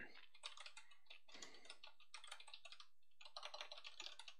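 Faint typing on a computer keyboard: quick runs of key clicks with short pauses between them.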